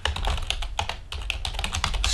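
Typing on a computer keyboard: a fast, uneven run of key clicks.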